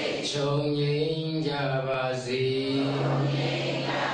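A Buddhist monk chanting in a single male voice, holding long, steady notes.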